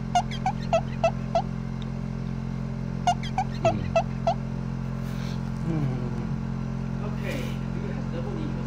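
A voice making two quick runs of five short, high, squeaky chirps, about three a second, over a steady low hum.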